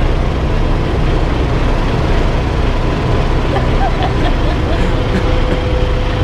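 Semi-truck's diesel engine idling: a steady low rumble that holds unchanged.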